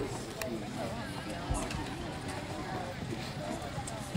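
Indistinct voices in the background, with the soft hoofbeats of horses trotting past on the arena's sand footing and a few light clicks.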